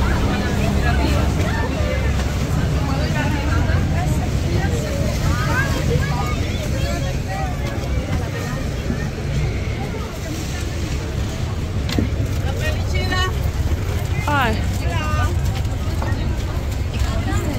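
A moored tour boat's engine running at idle, a steady low rumble, under the chatter of passengers nearby.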